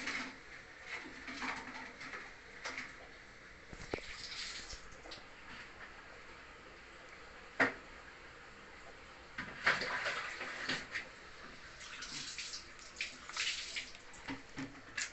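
Water splashing and dripping lightly in a shallow guppy pond, in irregular short bursts, with a sharp click just past halfway.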